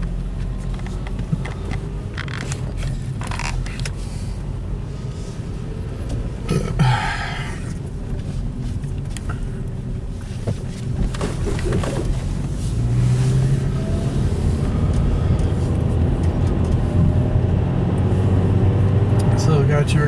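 A car's engine and road noise heard from inside the cabin while driving, a steady low rumble that grows louder about two-thirds of the way through as the car picks up speed.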